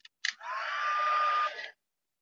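Embossing heat gun switched on: a couple of clicks, then its fan blows with a whine that rises in pitch and holds steady, cutting off suddenly after about a second and a half.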